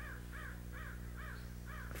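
A bird calling faintly, five short, evenly spaced calls about half a second apart, over a low steady hum.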